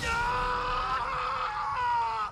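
A man's long, anguished scream, held on one pitch and dipping slightly just before it breaks off.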